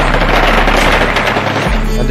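Rapid automatic-weapon gunfire, many shots overlapping in a dense crackle: celebratory gunfire marking a Taliban victory. It plays over a music track whose steady bass drops out briefly past the middle.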